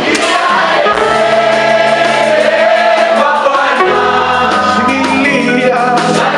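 Gospel praise music: several voices singing together and holding long notes over a steady low accompaniment, whose bass notes shift about four seconds in.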